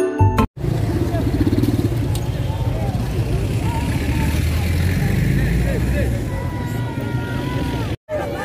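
A mallet-percussion jingle ends about half a second in, then a vehicle engine runs close by in street traffic, a steady low rumble, with the voices of a gathered crowd around it.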